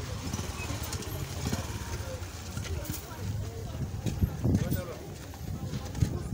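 Street ambience: people talking in the background over a steady low rumble, with scattered knocks and a louder stretch of voices about four seconds in.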